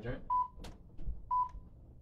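Two short electronic beeps at one steady pitch, about a second apart, with a sharp click between them.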